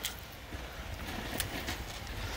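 Quiet outdoor background with a few faint, light clicks.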